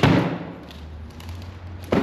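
Two hollow thumps about two seconds apart, each with a short echo off the metal walls of a large shed: a light duct mock-up is set down on a folding table and then onto a foam blank.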